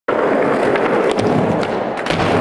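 Skateboard wheels rolling on pavement: a loud, steady rolling noise that cuts in abruptly at the start, with a few faint ticks.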